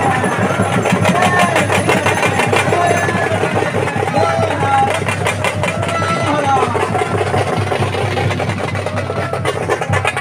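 Festival procession sound: music with a wavering melody and crowd voices, with runs of rapid percussive strokes about two seconds in and again near the end, over a steady low hum.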